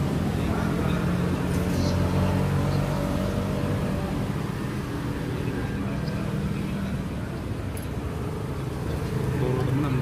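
Steady background of road traffic at a market, with a vehicle engine running nearby as a low, even hum that eases about seven seconds in.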